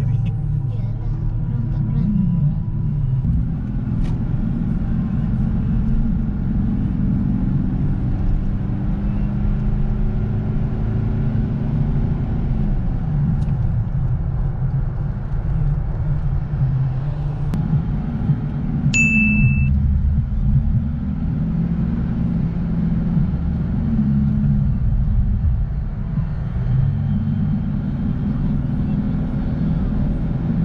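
Car cabin noise while driving: a steady low engine and road rumble, with the engine note rising and falling several times as the car speeds up and slows. A single short high-pitched beep sounds about two-thirds of the way through.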